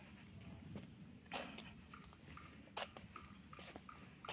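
Footsteps on dry grass and leaves: a few faint, irregular crunches and clicks over a low steady rumble.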